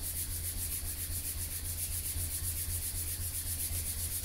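Palm of a bare hand rubbing briskly up and down a 30-degree red latigo leather razor strop in quick, even strokes, warming the leather before stropping.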